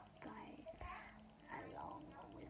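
A young woman speaking quietly, low and breathy, close to a whisper.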